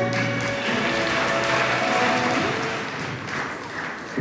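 Audience applauding as the freestyle music comes to an end, the applause fading out near the end.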